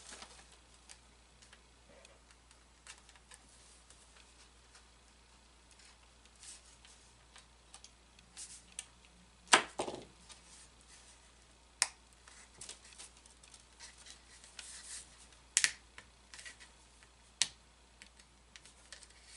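Scattered small clicks and taps of hands handling model airplane parts and tools on a workbench, with one louder knock about halfway through and a quick double tap near the end.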